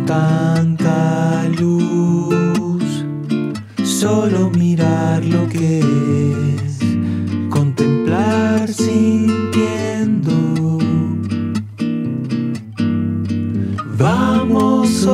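Acoustic guitar music: chords strummed steadily with a melody line moving over them, an instrumental stretch of a song with no words.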